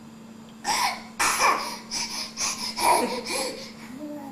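Laughter in a string of breathy bursts: one short burst, a brief pause, then a run of about six laughs over two seconds.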